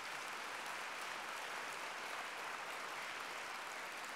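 Audience applauding steadily, an even patter of many hands at a fairly low level.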